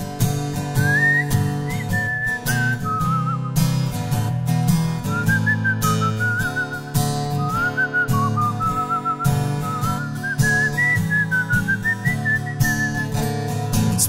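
Instrumental break in a song: a whistled melody with slight vibrato over guitar accompaniment.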